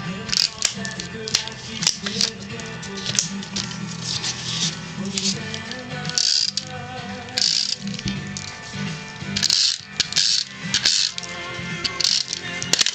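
Background music, with an adhesive tape runner rolled in short strokes across paper, making brief rasping bursts roughly once a second.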